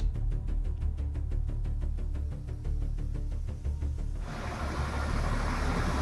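Low steady rumble of a truck-mounted crane's engine running while it holds and lowers a car on straps, with a hiss coming in about four seconds in.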